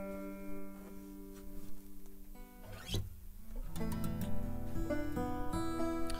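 The last chord of an acoustic guitar and banjo song rings out and fades away. About four seconds in, the acoustic guitar starts picking a few soft, loose notes.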